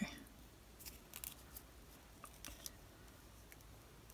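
Faint, scattered rustles and small clicks of a narrow paper quilling strip being rolled and curled between the fingertips.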